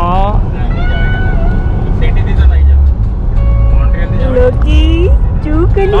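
Steady low rumble of a car's interior while driving, with music and voices over it.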